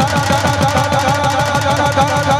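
Dakla drumming in Gujarati devotional folk music: a fast, even run of drum strokes, about eight a second, each falling in pitch, with a wavering higher melodic tone held above.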